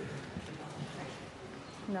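Indistinct talk of several people murmuring in a large chamber, with a few light knocks and shuffles.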